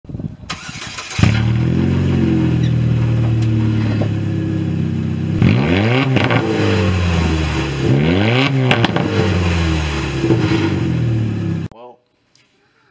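Chevrolet car's engine and exhaust running, starting up about a second in. It is revved twice, the pitch climbing and falling back around the middle and again a couple of seconds later, then cuts off just before the end.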